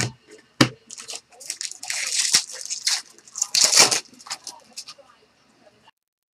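A stack of baseball trading cards being flipped and slid through the hands: quick papery swishes and clicks, busiest in the middle, with two sharp taps in the first second.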